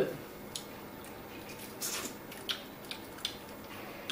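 Scattered soft wet clicks and smacks of boiled shrimp being peeled and eaten by hand, with a few sharper ticks about half a second in and around two to three seconds in.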